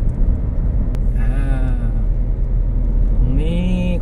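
Steady low road and engine rumble inside a moving car's cabin, with a single sharp click about a second in.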